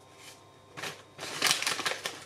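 Plastic spice packet rustling and crinkling as it is handled, in a few short bursts from about the middle on.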